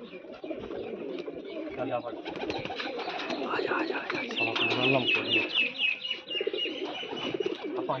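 Domestic pigeons cooing in a loft, several birds overlapping continuously, with a quick run of high ticking chirps about four and a half seconds in.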